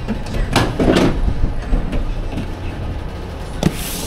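Knocks and bumps of cardboard-boxed TVs being handled into a cargo van: two strong knocks about half a second and a second in, and a sharp click near the end, over a steady low hum.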